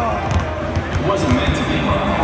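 A basketball being dribbled on a hardwood court, a run of repeated bounces, under a song with vocals playing in the arena.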